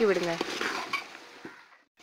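Chicken pieces sizzling in hot oil and masala in a large aluminium pot, with a few faint clicks of a ladle against the pot. The sizzle fades out to silence near the end.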